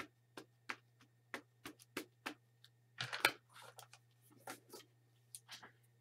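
A rubber stamp dabbed again and again onto an ink pad to load it with ink: quick light taps, about three a second.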